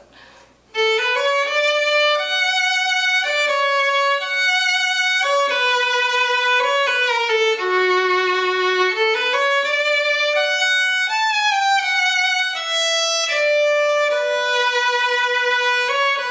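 Solo fiddle playing a slow New England waltz melody, starting about a second in: smooth, connected held notes, some sliding into the next.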